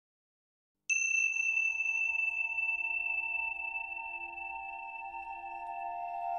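Silence, then about a second in a single struck metal bell tone that rings on with several clear, steady tones and a long, slow fade.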